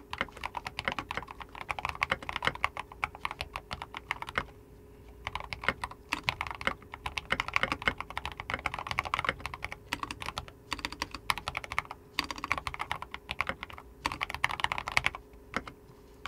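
Typing on a computer keyboard: runs of rapid keystrokes broken by short pauses.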